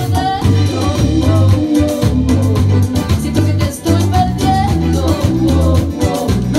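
A band rehearsing live: a man and a woman singing into microphones over an electric guitar and a steady beat.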